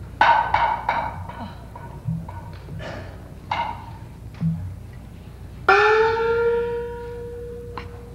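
Chinese opera percussion: a string of sharp clapper and drum strikes with a small gong ringing among them. About six seconds in comes one loud gong stroke, the loudest sound here; its pitch rises slightly at the start and it rings on for about two seconds.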